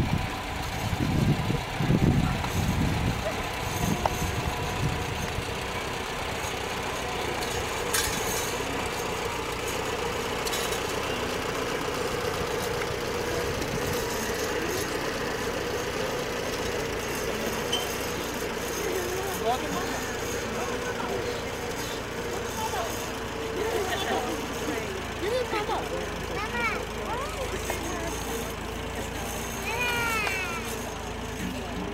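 Small farm tractor's engine running steadily as it pulls a hay wagon, loudest in the first few seconds. People's voices join in from about two-thirds of the way through.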